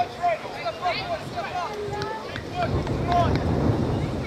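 Distant shouts and calls from players and spectators at an outdoor football match, many short calls one after another, with wind rumbling on the microphone, stronger in the second half.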